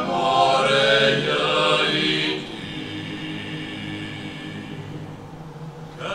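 A Dalmatian klapa, a male a cappella group, singing in close harmony: a full, loud phrase for the first two seconds, then a softer held chord.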